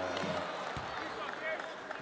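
Basketball arena crowd noise: a steady murmur of the crowd with faint, indistinct voices.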